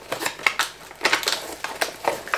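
Packaging being handled in the hands: irregular rustling and crinkling with sharp little clicks.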